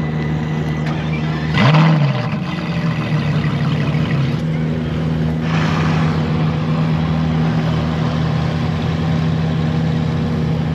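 A parked supercar's engine idling steadily, blipped once about one and a half seconds in with a quick rise and fall in pitch. A brief rush of noise comes about five and a half seconds in.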